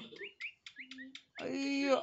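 Indian peafowl chick cheeping: a few short, high, rising peeps in the first second.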